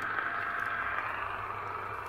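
Steady static hiss from a CB radio receiver's speaker on an open channel, with a faint steady tone under it.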